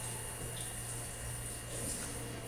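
Steady hiss with a low, even hum underneath: background room noise, with no distinct event.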